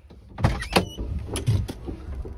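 A quick run of sharp clunks and clicks inside a car, about half a second in and again around one and a half seconds, over a steady low rumble.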